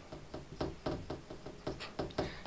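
Marker pen writing on a whiteboard: a quick run of short taps and scratches, about six a second, as the letters are stroked out.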